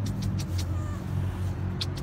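Steady low hum of a motor vehicle engine running, with a few short high ticks near the start and again near the end.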